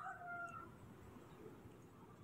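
Near silence in a pause between narration, with a faint, brief tone in the first half second.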